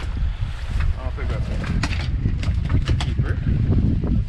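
Wind buffeting the microphone over the low rumble of a boat in rough water. A quick run of sharp knocks and clatters comes about two to three and a half seconds in.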